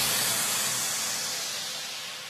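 Even hissing white noise with no pitch or beat, fading steadily. It is the decaying tail of an electronic promo track's ending.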